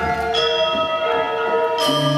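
Balinese gamelan music: struck metallophone keys ring in overlapping sustained tones, with a fresh stroke just after the start and another near the end, where a low tone also comes in.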